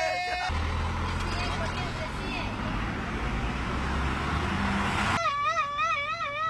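Outdoor roadside traffic and crowd noise with a deep rumble. It cuts off abruptly about five seconds in and gives way to a loud warbling pitched sound that wavers up and down a few times a second.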